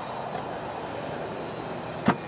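Steady outdoor background noise of road traffic.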